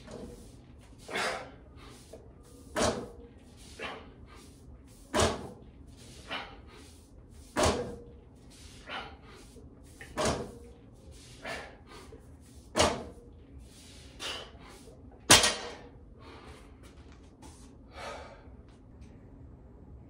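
A set of 255-pound barbell deadlifts: forceful breaths and dull knocks of bumper plates touching the floor repeat about every two and a half seconds, seven times. The sharpest knock, about 15 seconds in, is the bar being set down, followed by a few softer breaths.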